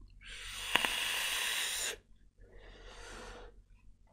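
A long draw on an electronic vape: about two seconds of airy hiss as air is pulled through the atomizer, with a single click partway in. About half a second later comes a fainter, shorter exhale of the vapour.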